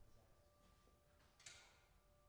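Near silence: room tone with a faint steady hum, and one brief soft rush of noise about one and a half seconds in.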